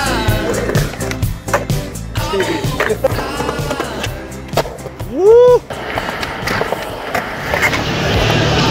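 Skateboards on concrete: wheels rolling and sharp clacks of boards popping and landing, heard over background music. About five seconds in, a loud, short tone rises and falls.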